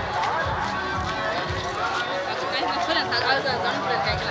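Singing voice over music with a steady low drumbeat.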